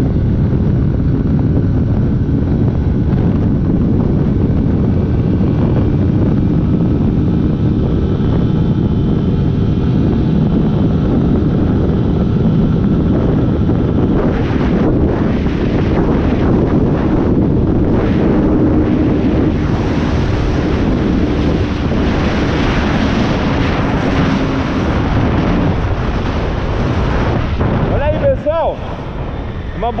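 Honda 160 motorcycle's single-cylinder engine running flat out in fifth gear at about 142 km/h, up against the rev limiter, under heavy wind noise on the camera microphone. About two seconds before the end the sound drops as the bike eases off.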